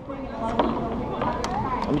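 Indistinct talking from people close by, over a low rumble.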